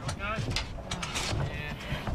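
Mechanical clicking and clattering over a low rumble, with a short wavering high-pitched sound near the start.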